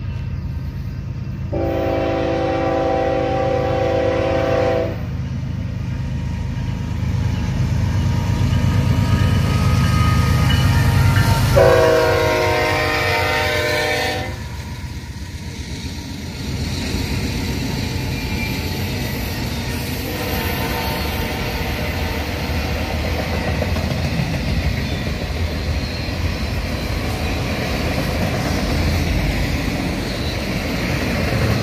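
Union Pacific GE C45ACCTE (ES44AC) diesel locomotives sounding their air horn in two long blasts, about ten seconds apart, over a steady rumble that grows loudest as the locomotives pass. The freight cars then roll by with a steady rumble and clatter of wheels on rail.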